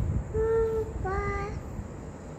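A toddler singing two held notes of a Vietnamese children's song, the second a little lower and bending up at its end, with a low rumble underneath.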